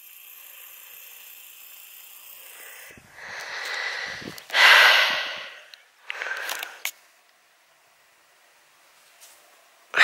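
Faint steady hiss, then three rushes of breath close to the microphone about three to seven seconds in, the middle one loudest: a person breathing heavily.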